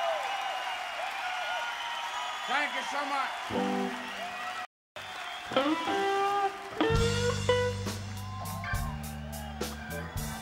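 Live blues band: an electric guitar plays bent notes with a wide shaking vibrato. About seven seconds in, the band comes in with heavy bass notes and regular sharp hits. The sound cuts out completely for a moment just before the middle.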